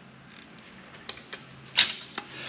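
Handling noise from a computer motherboard being lifted and turned in gloved hands: a few light clicks and taps about a second in, then a short, louder burst of noise near the end.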